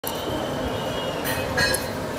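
Steady outdoor background noise, with a few short high sounds just past halfway.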